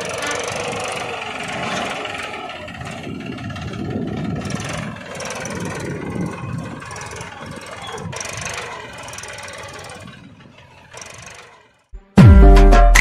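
A homemade mini tractor's small motor running as it tows a loaded trolley, fading down near the end.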